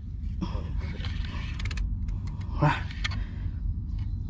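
Fishing reel and rod creaking, with a few sharp clicks, while a hooked fish is being fought and reeled in, over a steady low hum.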